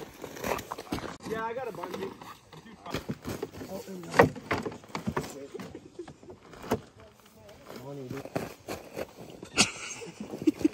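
Snow shovels knocking and clattering as they are set onto and fastened to a snowmobile's rear tunnel rack: a few sharp knocks, the loudest about four seconds in, with low voices in the background.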